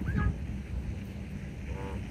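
Wind rumbling on the microphone, with a couple of short, high chirping calls right at the start and a brief low call near the end.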